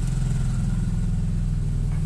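Car engine idling steadily, a low even drone with no changes in speed.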